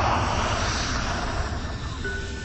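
A rushing whoosh sound effect that swells quickly, peaks in the first second and fades away over about two seconds, over a low rumbling drone.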